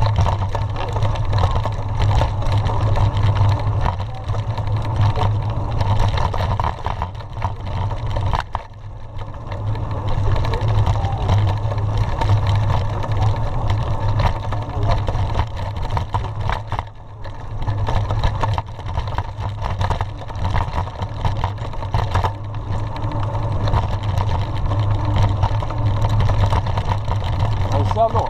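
Mountain bike rolling downhill on a rough dirt road, heard through a handlebar-mounted camera: a steady low rumble from the tyres and wind on the microphone, with constant rattling clicks from the bike over the bumps. The noise dips briefly twice.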